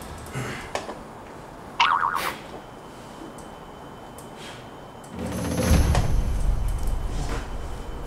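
Edited TV sound effects: a short pitched effect with a sudden start about two seconds in, then a low swell from about five seconds on.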